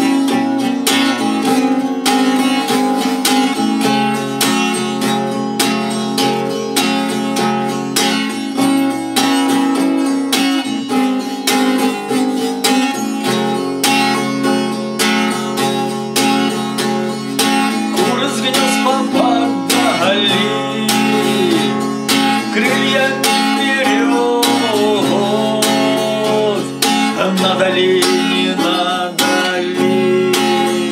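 Eight-string acoustic guitar strummed in a steady rhythm; a man's singing voice comes in over it about two-thirds of the way through.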